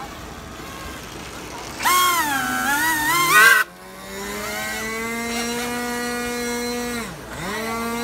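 An RC flat jet's electric motor and propeller, run through a reversing ESC, whining as the throttle is worked. First a loud whine wavers up and down in pitch and cuts off abruptly. The motor then spins up to a steady whine, drops almost to a stop near the end and spins up again, driving the propeller in reverse to push the plane backward.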